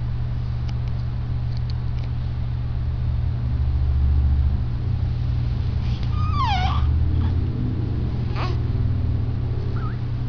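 Newborn baby giving a short squeaky whimper that falls in pitch about six seconds in, with a fainter brief squeak a couple of seconds later, over a steady low hum.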